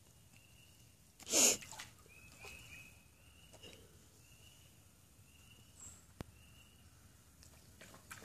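Mostly quiet outdoor ambience. About a second and a half in there is one short, loud, breathy burst of noise. After it come faint high chirps repeated at one pitch, and a single sharp click near the end.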